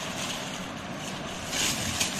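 Paper and plastic food bags rustling as they are handled, louder near the end, over a steady background hiss.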